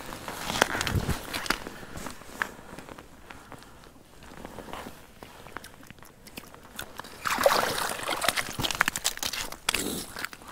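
Crunching and rustling of hands and clothing on snowy ice while an ice-fishing jig line is worked through a hole. Near the end comes a louder stretch of crunching and scraping as a fish is hauled out of the hole and lands on the snow-covered ice.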